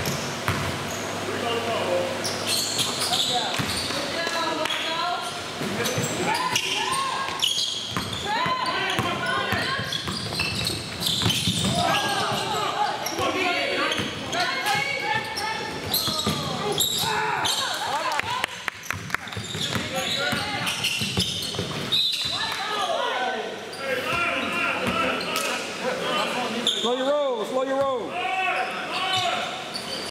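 Basketball bouncing on a hardwood gym floor in repeated sharp knocks, amid players' indistinct voices and shouts in a large gym.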